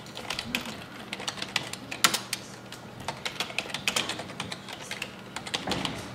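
Typing on a computer keyboard: quick, irregular key clicks, over a faint steady low hum.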